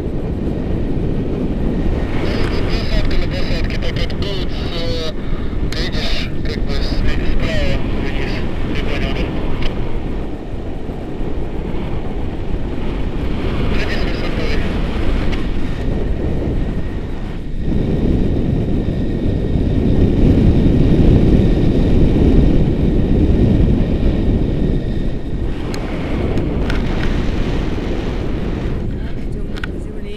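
Wind rushing and buffeting over the microphone of a camera carried on a paraglider in flight, a steady low rumble that grows louder in the second half.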